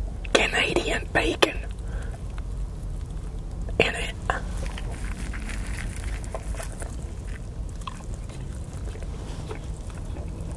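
Close-miked eating of a chaffle breakfast sandwich: a few sharp bites and mouth clicks in the first second and a half and again about four seconds in, then softer chewing, over a low steady hum.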